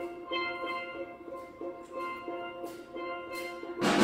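Steel band playing steel pans: a soft, quickly repeating figure of ringing pitched notes, then just before the end the whole band comes in much louder with deep bass notes.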